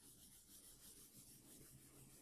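Faint rubbing of a handheld eraser wiping marker writing off a whiteboard.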